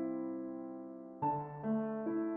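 Calm background piano music: a held chord fades away, then new notes are struck just past a second in.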